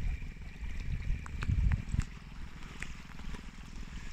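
45 lb Minn Kota trolling motor running steadily, held at about 400 watts, with water washing along the inflatable boat's hull under a low rumble. A few clicks and knocks come about one to two seconds in.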